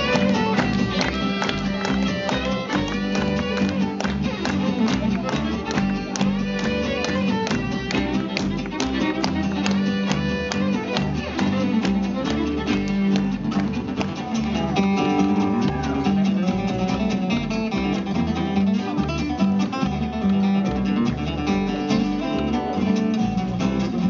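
Instrumental break in a western string-band song: a fiddle plays the lead over strummed acoustic guitar and upright bass accompaniment. Later in the break the acoustic guitar takes over the lead.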